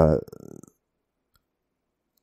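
A man's hesitant "uh" trailing off with a few faint clicks, then near silence.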